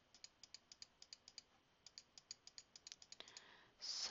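Faint, rapid clicking at a computer, about four or five clicks a second, as brush dabs are laid on in a painting program.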